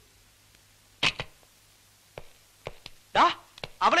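A few short, sharp knocks or clicks against quiet room tone. The loudest comes about a second in, with fainter ones later.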